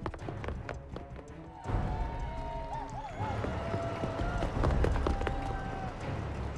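Quick running footsteps for about the first second and a half, then music comes in with held notes and warbling trills.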